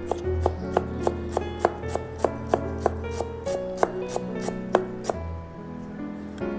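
Steel chef's knife chopping ginger and garlic on a cutting board, in quick, evenly spaced strikes about three a second that stop about five seconds in. Background music plays underneath.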